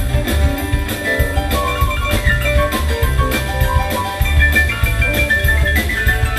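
Live rock band playing an instrumental passage: a steady drum beat and bass under electric guitar and keyboard lines, with no singing.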